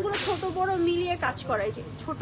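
A quick swish of thin garment fabric being flicked through the air, lasting under half a second just after the start, with a woman's voice sounding under and after it.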